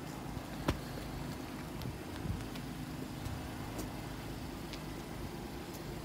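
A 2019 Honda Pilot's 3.5-litre V6 idling steadily, a low even hum, with one sharp click about a second in.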